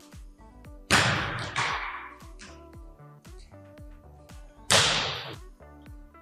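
Two volleyball serves, each a sharp slap of a hand striking the ball, about a second in and again near the end, ringing out in the echo of a large gym. Background music plays under them.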